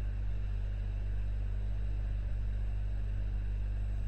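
Steady low electrical hum with a background hiss, unchanging throughout.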